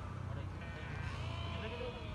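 Sheep in a grazing flock bleating, several calls overlapping, over a low murmur of voices.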